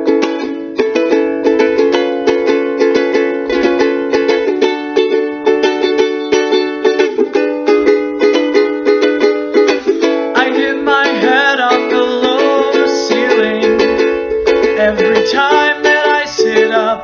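Ukulele strummed in steady, evenly repeated chords as a song's introduction; about ten seconds in, a voice comes in singing over it.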